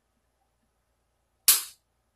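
One sharp crack about a second and a half in, from a plastic bottle cap being forced by hand while its seal resists opening.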